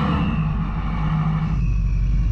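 V8 engines of heavy 4x4s running steadily in low range as the tow rope between them takes up the strain, a low, even rumble.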